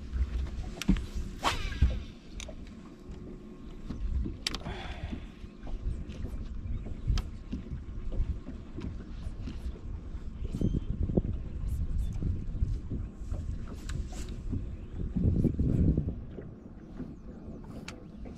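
Wind on the microphone and water lapping against a bass boat's hull, a steady low rumble, with scattered small clicks and knocks of rods and reels on the deck. It swells briefly about fifteen seconds in.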